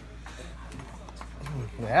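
A few faint light knocks over low room noise, then a man's voice starting near the end.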